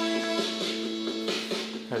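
Guitar-led music playing from the speaker of a 1986 General Electric clock/radio/TV set.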